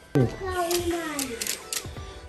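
A plastic Hot Wheels City track elevator clicks and clacks as it is worked by hand, with a sharp click near the start and a few lighter ones after. Over it runs a long, slowly falling tone.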